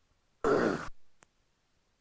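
A short sigh or breath into a headset microphone, about half a second long, cut off sharply, followed by a faint click.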